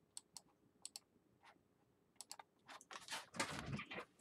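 Computer keyboard keys clicking, a few scattered taps at first, then a faster, louder run of clatter near the end.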